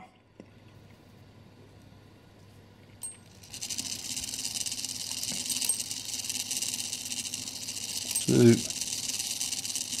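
Gilbert kitchen clock's count-wheel strike movement, out of its case with no gong, striking the hour: a click about three seconds in, then the steady whirr and clatter of the strike train running with its fly spinning.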